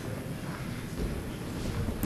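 Low, steady background rumble of a sports hall, with no clear distinct events.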